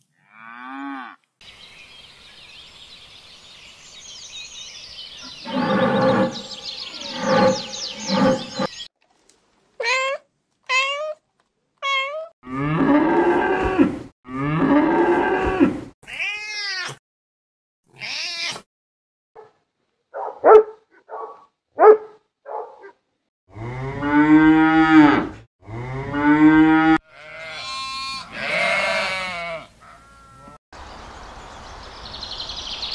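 A run of separate animal calls: a cow mooing in the first half, then a cat meowing several times in short calls around the middle, and longer, louder calls near the end.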